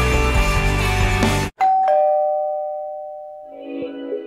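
Music that cuts off suddenly about a second and a half in, followed by a two-note ding-dong doorbell chime, a higher note then a lower one, ringing out for about two seconds. Other music starts quietly near the end.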